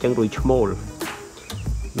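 A brief spoken phrase, then low buffeting rumbles on the microphone and one sharp click, under a faint steady high insect drone.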